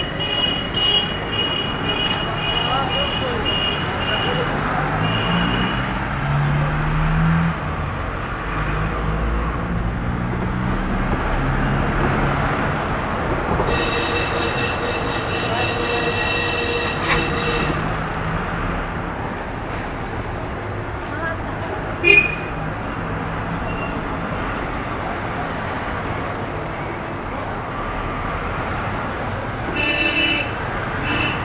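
Street traffic heard from inside a moving car: the engine runs under steady road noise. Vehicle horns blare in long, steady blasts for several seconds at the start and again around the middle. A single sharp knock comes about three quarters of the way in.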